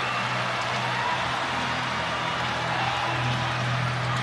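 Indoor volleyball arena ambience: steady crowd noise with music playing over the arena sound system, a low steady hum underneath.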